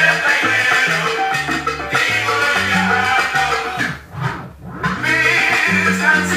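Instrumental passage of a salsa song by a sonora band, with a walking bass line under the band. About four seconds in the band drops out briefly, leaving only the bass, then comes back in about five seconds in.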